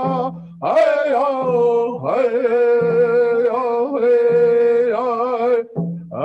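Nez Perce men singing a traditional flag song in a chanted style: long held notes, each phrase opening with a sliding swoop, broken by short breaths about half a second in and again near the end.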